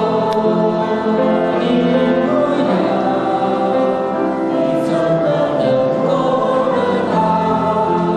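A church congregation singing a Chinese worship song together, many voices holding long, steady notes.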